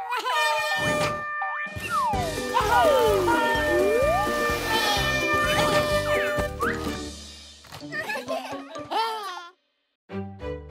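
Children's cartoon music with comic sound effects: springy boings and a whistle-like glide that falls and then rises about two to four seconds in. Near the end a character's wordless cartoon voice takes over, then the sound cuts off suddenly just before the end.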